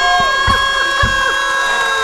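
A held electronic chord of several steady tones, with a few soft knocks beneath it. It bends down in pitch and drops away near the end, like a radio sound-effect stinger played off the studio's board.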